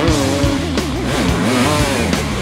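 Rock music soundtrack with electric guitar, loud and continuous.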